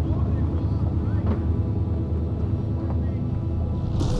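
Big-block Ford 7.3L Godzilla pushrod V8 in a Cobra Jet Mustang drag car, idling with a deep, steady rumble.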